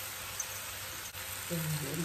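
Steady hiss of a large pot of water heating on a gas stove, steaming with small bubbles forming just short of the boil. A voice starts near the end.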